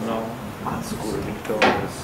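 A sharp knock from a handheld microphone being handled as it is passed along the panel table, about one and a half seconds in, with brief murmured speech before it.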